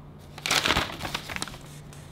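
A folded sheet of paper being unfolded and handled: a burst of crinkling and rustling starting about half a second in and lasting about a second.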